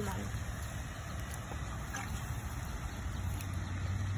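Steady low rumble with a faint hiss of outdoor background noise, with no distinct event standing out.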